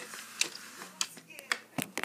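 A few sharp, separate clicks and knocks of plastic toy train parts and track being handled, about one every half second.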